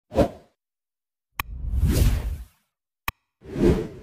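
Whoosh sound effects with sharp clicks from an animated subscribe-bell intro: a short swish, then two longer swooshes, each just after a click.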